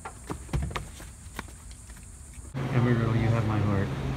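A few light clicks and knocks, then about two and a half seconds in an abrupt change to a louder steady low hum with a voice or singing over it.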